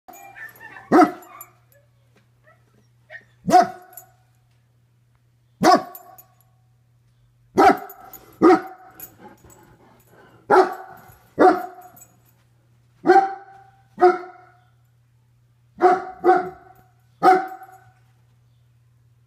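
German Shepherd barking indoors: about a dozen single barks one to two seconds apart, some coming in quick pairs.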